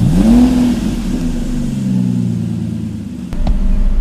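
Mercedes-Benz E-Class convertible's engine comes in suddenly, its revs rising quickly for about half a second, then holding and slowly easing back down. A short knock sounds near the end.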